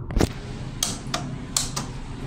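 About five sharp clicks over a steady hiss, from the buttons on a Fujitec hydraulic elevator's car operating panel being pressed as the B floor button lights up.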